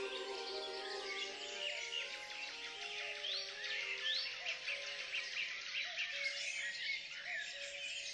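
Birds chirping and singing in many short rising calls over the last sustained notes of the song as it fades out.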